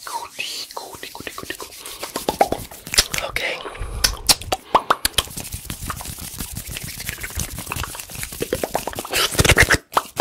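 Fast, aggressive ASMR hand and mouth sounds made right at a foam-covered handheld recorder: rapid clicks, pops and whispery mouth noises mixed with hand rubbing and fluttering, with a brief dropout just before the end.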